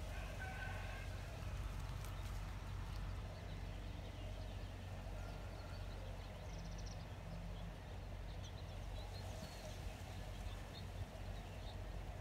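Outdoor background: a steady low hum with faint, short bird chirps now and then, mostly in the second half.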